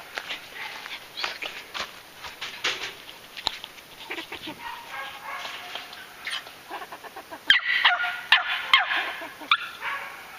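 Young squirrel-dog puppy barking and yipping at a squirrel held in a tube, in short high calls that come louder and closer together near the end.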